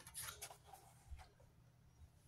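Faint rustling of a paper card being handled, a few short scrapes in the first second or so, then near silence.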